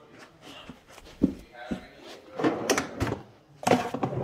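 A series of knocks and rattles of things being handled and moved about while a pair of scissors is fetched, with the loudest clatter near the end.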